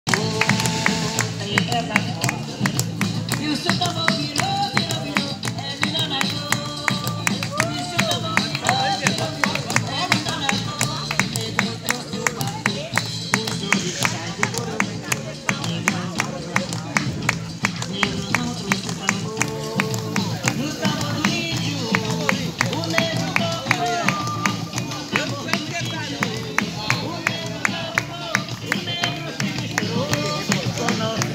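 Afro-Brazilian Candomblé ritual music: drums beating a fast, steady rhythm under sung chants.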